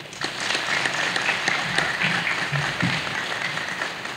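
Audience applauding: steady clapping from a hall full of people.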